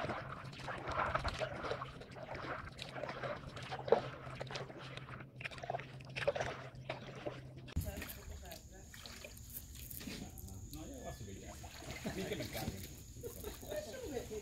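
Stand-up paddleboard paddle stroking through calm lake water: faint, irregular sloshing and splashing over a low steady hum. About eight seconds in the sound changes to a quieter background with a thin, steady high tone.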